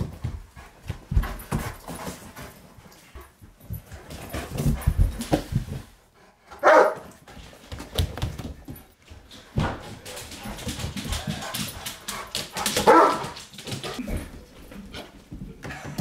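A dog playing with a plush toy gives two short barks, one around the middle and one near the end, amid scuffling and knocks on the floor.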